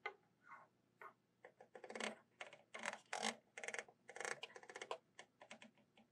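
An irregular run of light clicks and taps, faint and bunched most thickly in the middle, from hands working the power-supply controls while the accelerating voltage is turned up.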